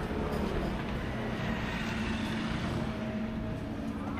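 Steady city street noise, mostly the rumble of road traffic, with a faint low engine hum underneath.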